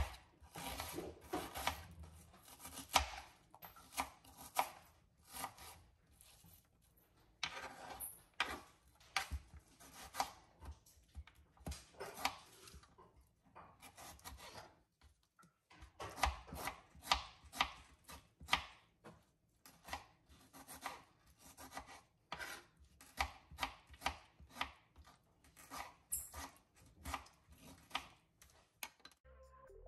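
Kitchen knife chopping on a wooden cutting board, dicing a red onion and then tomatoes: runs of quick, even strokes broken by short pauses.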